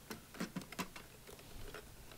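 Faint light clicks and taps of hands handling a hollow plastic toy piggy bank with plastic coins inside, a few clicks in the first second and then almost nothing.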